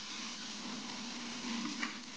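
Zipper SS rotary spinner carpet-extraction tool working a commercial carpet on hot-water truckmount suction: a steady hiss of spray and vacuum airflow with a low hum underneath.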